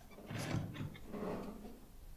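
Wooden plank door being opened, two rattling, scraping movements about a second apart.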